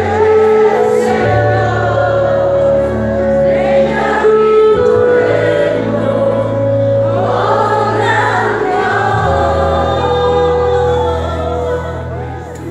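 Live Christian worship music: a group of voices singing together over a band with electric guitars and drums. Long held bass notes change every few seconds.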